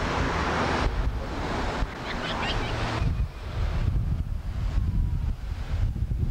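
Wind buffeting a camcorder microphone: a heavy low rumble with a hiss over it, changing abruptly a few times as the recording cuts.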